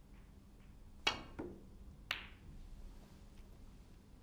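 A snooker cue tip striking the cue ball with a sharp click about a second in, then about a second later the click of the cue ball hitting another ball, with a short ring.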